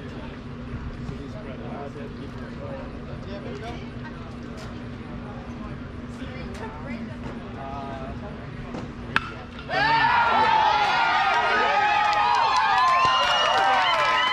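A single sharp crack of a bat hitting a pitched baseball about nine seconds in, followed at once by spectators cheering and yelling loudly, many voices at once. Before the hit, faint crowd chatter over a low steady hum.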